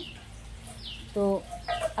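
A chicken clucking in the background, with one short spoken word about a second in.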